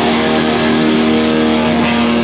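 Loud distorted electric guitar from a live hardcore band, holding one chord that rings out steadily, with no drum hits.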